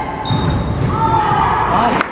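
Basketball game in a gymnasium during a rebound scramble: players and spectators shouting, with a brief high squeak early on and low knocks of play on the court.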